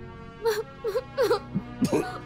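A woman whimpering and moaning in distress, a series of short wavering cries, over a sustained music score.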